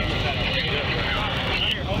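Indistinct voices of several people in the background over a steady low rumble.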